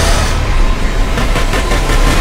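A loud, sudden rumbling roar of cinematic sound effects with a heavy low rumble, breaking into a quick run of pulsing hits in its second half.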